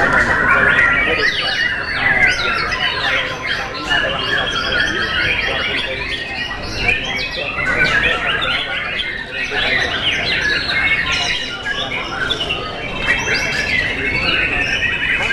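Several white-rumped shamas (murai batu) singing at once: a dense, loud, unbroken tangle of overlapping whistles, rapid trills and chirps, with human voices mixed in underneath.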